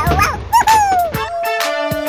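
Children's background music interrupted by a cartoon sound effect: a pitched, whimper-like call that slides downward in pitch for about a second, trailing into a long, slowly falling tone.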